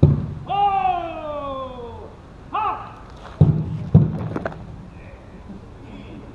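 A drill command shouted as one long falling call and a short one, then two loud thuds about half a second apart: the parading ranks stamping their boots together as they turn right to fall out.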